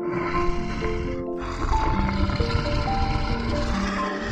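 Male lion growling in two long, rough bursts, with a short break about a second in, over soft piano background music.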